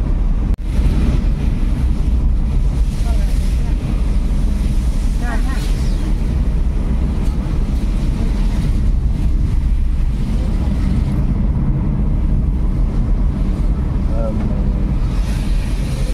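Inside a moving car on a rain-wet road: a steady loud low rumble of engine and tyres with a hiss of spray and wind. It cuts out briefly about half a second in. Faint voices come through now and then.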